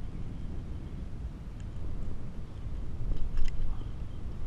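Steady low rumble with a quick run of sharp metallic clicks about three seconds in, as pliers work the hooks of a plug lure free from a caught fish's mouth.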